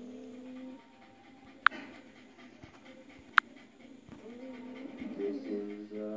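Soft pitched whining: a short steady whine at the start and a wavering one in the last two seconds. Two sharp clicks come between them, about a second and a half apart.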